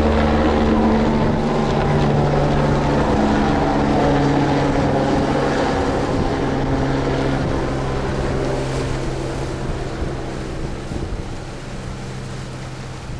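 An engine running steadily with a low, even drone, slowly fading over the second half.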